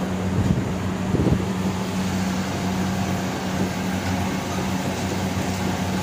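Steady roar of high-pressure commercial gas burners burning with tall open flames, with a steady low hum underneath.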